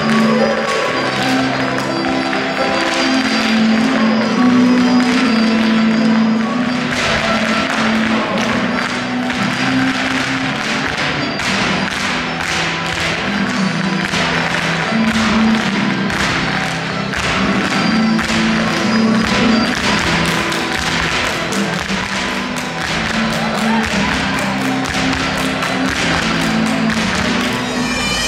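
Irish hard-shoe step dancing: rapid, rhythmic taps and stamps of several dancers' shoes on a hall floor, over a dance tune played through speakers. The footwork gets denser about a quarter of the way in.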